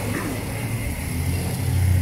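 Street traffic passing close by: the low hum of car and motorcycle engines with tyre noise, growing louder toward the end as a vehicle approaches.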